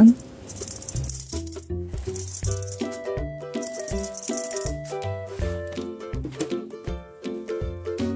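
Dried popcorn kernels poured by the spoonful into a nonstick pan, rattling in short pours, over background music.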